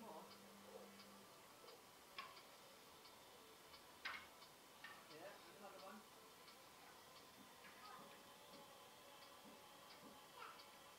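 Near silence with a few faint, light knocks of pine boards being handled on paving slabs, the clearest about four seconds in.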